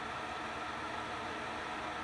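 Steady whir of a cooling fan, running evenly while the charger works; the owner puts the fan noise down to the power supply.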